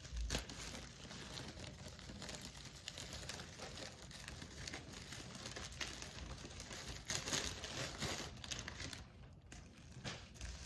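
Plastic bubble wrap crinkling and rustling as it is handled and pulled open, with louder bursts of crinkling at the very start and again about seven seconds in.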